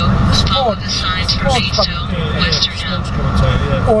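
Steady road and engine rumble heard inside a car cruising at motorway speed.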